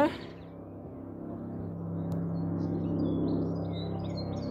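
Eurocopter EC155 helicopter flying overhead, a steady low droning hum that grows louder over the first three seconds, then eases slightly. Nearby it is quite loud.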